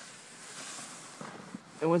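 Snow sleigh scoop pushed through deep snow: a soft, steady scraping hiss, with a few faint crunches late on.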